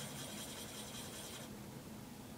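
Felt-tip marker scratching steadily back and forth on paper as a drawing is shaded in, stopping about one and a half seconds in.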